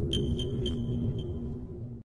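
Logo sting: a quick series of bright electronic pings that fade out over about a second and a half, over a low music bed.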